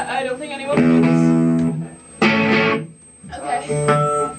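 Electric guitar played briefly: one chord rings for about a second, then a second, shorter strum about two seconds in, with bits of talk around them.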